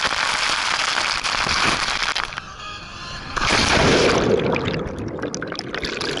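Water rushing and splashing loudly around the rider at the bottom of a water slide as they hit the pool. The spray eases briefly, then a second heavy burst of splashing comes about three and a half seconds in and breaks into crackling spatter.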